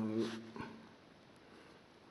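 A short, low hum from a man's voice, about half a second long, right at the start, then only faint pen-on-paper writing in a book.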